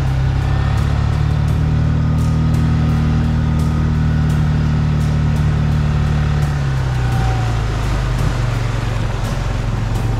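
Small outboard motor pushing an inflatable boat along at steady speed, its engine note dropping to a lower pitch about two thirds of the way in as the throttle eases. Scattered short taps sound over the engine throughout.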